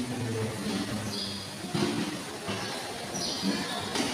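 Speech only: a man's voice, the priest reading aloud at the altar.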